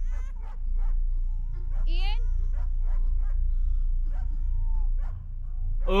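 Short, high whimpering cries, one sliding sharply upward about two seconds in, over a low steady rumble.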